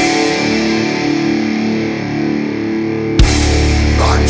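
Rock music: the drums and bass drop out, leaving held chords ringing. About three seconds in, the full band comes back in on a sharp drum hit.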